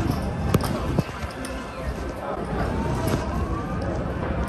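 Casino chips clicking as players set them down on a roulette table layout, two sharp clicks in the first second, over the steady babble of voices on a busy casino floor.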